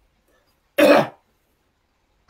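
A single short, sharp throat-clearing from a person, a little under a second in.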